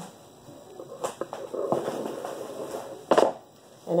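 Plastic bubble wrap being handled and pulled off, a rustling crinkle with a sharp click about a second in and a louder snap about three seconds in.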